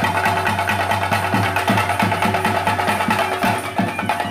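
Theyyam ritual percussion: chenda drums beaten in a fast, steady rhythm with clashing hand cymbals, over a steady held tone.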